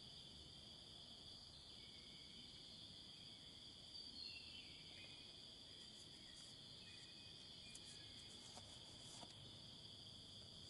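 Faint, steady high-pitched insect chorus droning without a break, with a few soft short chirps and light rustling ticks in the second half.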